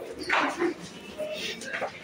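A dog barking in several short yips.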